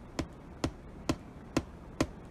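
A steady beat of sharp taps or clicks, about two a second, with no singing over it.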